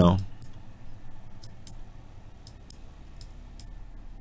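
Computer mouse clicking: a handful of light, sharp clicks spaced irregularly, some in close pairs.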